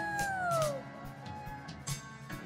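A woman's high, drawn-out "uuh!" whoop into a microphone, held and then sliding down in pitch until it fades out under a second in. Soft worship-band music plays beneath it.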